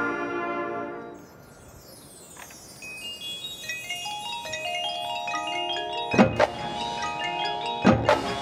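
A marching band's held chord fades out about a second in; after a brief lull, the front ensemble's mallet percussion comes in with quick ringing keyboard notes that build in layers. Two sharp percussion hits land about two seconds apart near the end.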